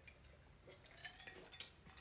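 Quiet clinks of ice cubes in a glass of gin and tonic as it is sipped and lowered, with the sharpest clink about one and a half seconds in.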